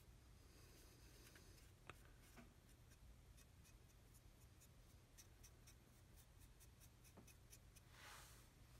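Very faint, light scratchy strokes of a small sponge weathering applicator rubbed over a plastic scale-model chassis. The quick ticks come more often in the second half.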